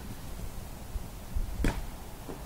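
Wind buffeting the microphone outdoors, an uneven low rumble, with a short burst of a man's voice about a second and a half in.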